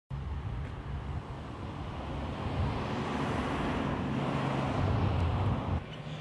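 A road vehicle passing over a low rumble, its noise building to a peak in the middle and cut off suddenly near the end.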